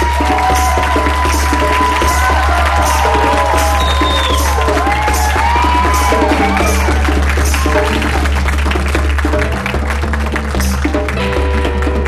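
Live band playing: gliding lead notes over a sustained bass line and hand drums, with a steady beat.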